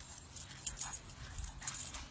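Boston terrier puppy moving in grass with a tennis ball in its mouth as it settles down: a run of short rustles and clicks, with one sharp click about two-thirds of a second in.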